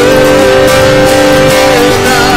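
A man singing with an acoustic guitar strummed beneath, holding one long note that drops near the end.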